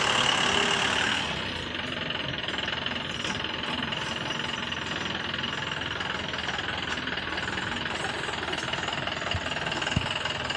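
Mahindra pickup's engine idling steadily, with a slight drop in level about a second in.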